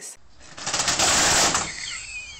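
Window roller shutter (Rolladen) being let down, its slats rattling in a rapid, continuous clatter. It builds, is loudest about a second in, then eases.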